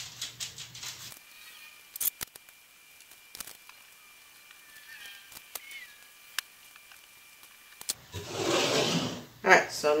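Light taps and clicks of hands working rolled chickpea-flour cracker dough on a silicone baking mat, with a few sharp clicks in the first second and about two and three and a half seconds in. A brief rustling scrape comes a little after eight seconds, as dough scraps are gathered up.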